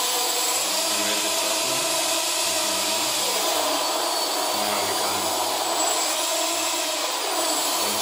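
Brushless outrunner motors of a quadcopter, 1000 Kv and without propellers, spinning at low throttle after arming: a steady whir with a faint high whine.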